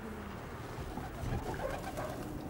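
Racing pigeons cooing softly, a low, continuous murmur.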